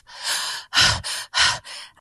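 A woman's breath at a close microphone in five short unvoiced puffs, about four a second, with no pitched voice.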